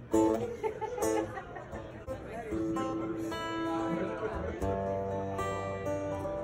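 Acoustic-electric guitar picked note by note: a few short, clipped notes, then single notes and chords left to ring as the intro of a slow song gets under way.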